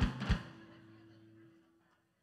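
Drum kit struck twice, the second a deep, low hit about a third of a second in, followed by a low ringing tone that fades away before the end.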